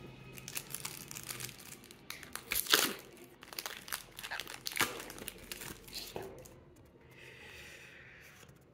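A foil Pokémon booster pack wrapper crinkling and crackling in irregular bursts as it is handled and opened. The loudest crackles come about three and five seconds in, and it goes quieter near the end.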